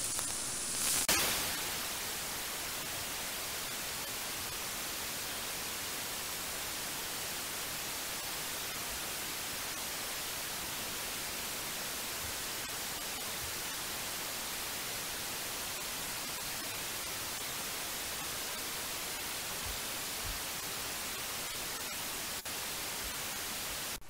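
Steady radio static from a software-defined radio receiver tuned to the Soyuz voice channel on 121.750 MHz. After a short burst about a second in, the transmission is gone and only even hiss remains: the receiver is picking up no signal.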